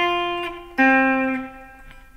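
Clean electric guitar playing two-note perfect-fourth intervals on the G and B strings. One dyad is struck right at the start and left to ring down. A second, lower dyad is struck about three-quarters of a second in and fades out by the end.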